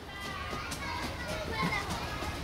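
Children playing, several high children's voices chattering and calling over one another.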